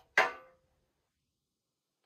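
A brief sharp sound just after the start that fades within half a second, then dead silence.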